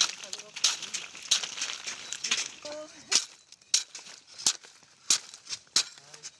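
A coa blade chopping the sharp leaves off an agave plant by hand, a regular run of about nine crisp chops, one every two-thirds of a second.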